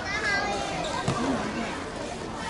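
Young voices calling and chattering around a basketball game, with a basketball bouncing on the court about a second in.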